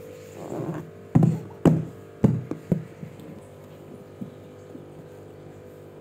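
Small hands slapping the lid of a cardboard box: five sharp thumps in quick succession between about one and three seconds in, after a brief scuffling rub. A steady hum runs underneath.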